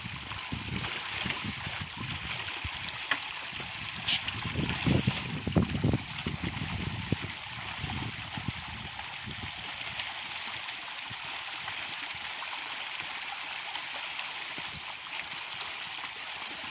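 A shoal of milkfish splashing and churning at the pond surface: a steady, dense hiss of breaking water. Irregular low rumbles run through the first half and settle in the second, with a brief sharp click about four seconds in.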